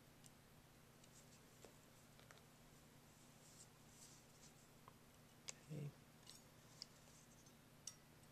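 Near silence with faint handling of steel pliers and a small coil spring on a felt-covered table: scattered light metal clicks and rustles, with a sharp click and a soft thump a little past halfway. A faint steady low hum runs underneath.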